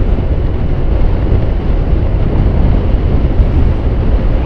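Steady wind rush and riding noise from a 2015 Yamaha Smax scooter cruising along a street, with wind buffeting the rider's microphone.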